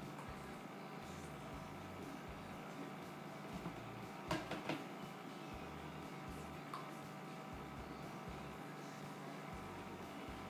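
Quiet kitchen room tone with a faint steady hum, broken about four and a half seconds in by a few light knocks of plastic soap-making containers being set down on a stone countertop.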